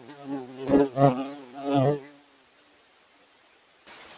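A flying insect buzzing close to the microphone, its drone wavering in pitch and loudness, with three louder swells or knocks about a second in and near two seconds, then stopping.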